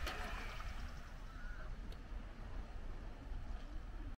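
Steady outdoor background noise with a low rumble and a soft hiss, and no clear single sound standing out.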